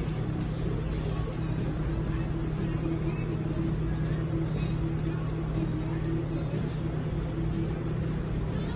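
Steady low machine hum, even in level throughout, with a faint murmur of voices in the background.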